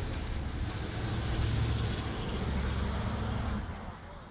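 A motor vehicle running, a low engine rumble that swells about a second in and fades away shortly before the end, as a vehicle passing by would.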